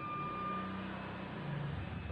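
Marker writing on a whiteboard: faint scratching with a short thin squeak in the first second, over a low steady hum.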